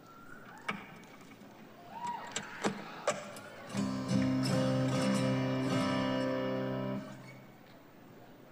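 Amplified steel-string acoustic guitar through a stage PA. A faint feedback whine and a few sharp taps and plucks come first, then a chord rings out for about three seconds and cuts off suddenly.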